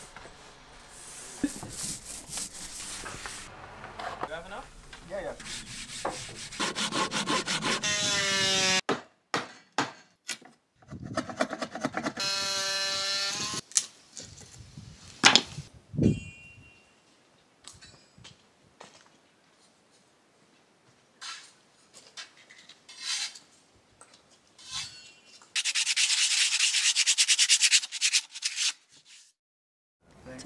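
Woodworking sounds in a sequence: a brush rubbing oil into wooden boards, power tools running, one spinning down with a falling pitch, sharp knocks against timber, and a few seconds of steady rasping near the end.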